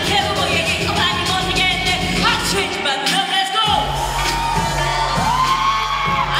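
A woman singing into a microphone over a loud pop backing track played through a hall's sound system. A little past the middle the bass cuts out for about half a second, then the beat comes back.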